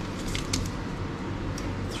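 A few brief, faint rustles and light clicks as a paper receipt is handled and laid on a wooden counter, over a low steady room hum.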